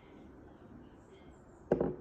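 A ribbed glass beer mug, part-filled with dark lager, set down on a tabletop: one short, sharp thunk near the end.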